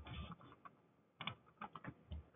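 Faint, scattered taps on computer keyboard keys: a few isolated clicks, then a quick cluster of several near the end.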